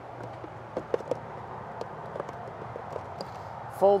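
A few light clicks and knocks as a flexible shower hose and plastic sprayer are coiled and stowed in an RV's plastic exterior shower compartment, over a steady background hum.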